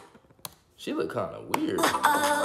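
Pop music cuts off abruptly as the video is paused. Two sharp clicks follow about a second apart, with a man's short stretch of speech between them, and the music starts again near the end.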